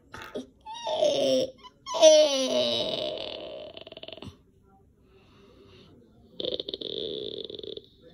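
A person laughing in a put-on character voice: a short laugh, then a longer one that slides down in pitch. After a quiet pause comes a steady, raspy breathy sound for about a second and a half near the end.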